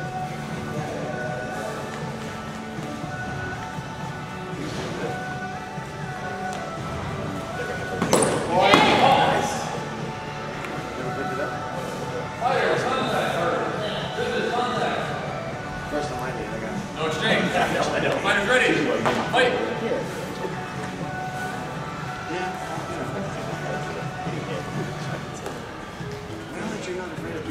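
A practice-sword sparring bout on a wooden gym floor: thumps of footwork and strikes in a large echoing hall, over steady background music. Three louder bursts of shouting come in the middle, at about 8, 12 and 17 seconds.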